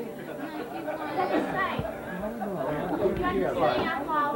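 Several people talking at once in a room: indistinct, overlapping chatter with no music.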